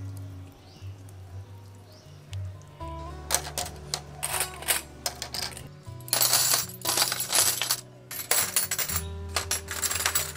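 Stainless steel S-hooks clinking and jingling against each other as they are handled on a wicker tray. The clinks start about three seconds in and come thickest in the middle, over soft background music.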